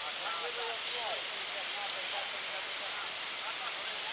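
Steady, even hiss of rain and running floodwater, with faint voices talking in the first second or so.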